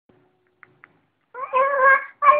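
A young child's high-pitched, drawn-out vocal sound that starts a little past halfway through, after a couple of faint clicks.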